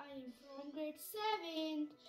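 A young girl's voice with long, held, wavering notes, as in singing.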